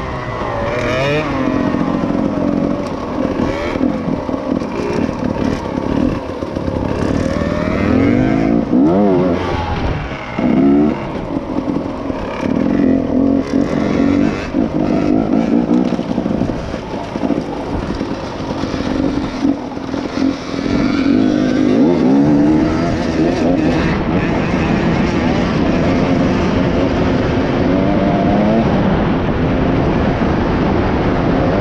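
KTM EXC 250 enduro motorcycle engine running under the rider, its pitch rising and falling over and over as the throttle is opened and closed while riding over rough ground.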